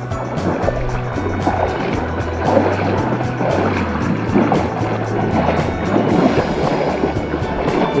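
Background music with a bass line and a steady beat.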